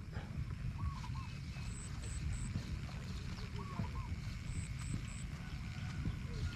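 Wind rumbling on the microphone in open country, with faint animal calls: short three-note calls repeating every three seconds or so.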